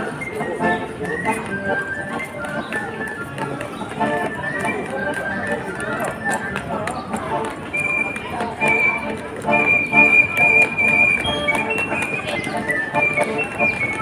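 Street accordion playing a melody, with a high note held for a few seconds past the middle.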